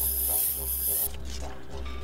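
A high hiss that cuts off suddenly about a second in, over steady background music.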